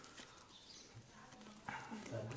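Near silence: faint room tone, with a short click near the end.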